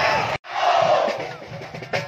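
Large crowd of football supporters chanting and shouting in a stadium, with drums beating. The sound cuts out for an instant about half a second in, then comes back at its loudest and eases off toward the end.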